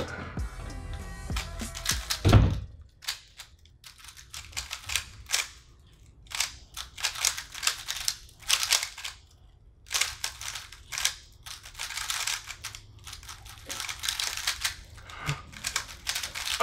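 Two 3x3 speed cubes being turned fast by hand, a dense irregular clatter of plastic layer turns. There is one dull thump about two seconds in.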